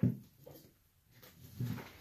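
The end of a man's spoken word, then a pause in near silence, with a faint low sound near the end.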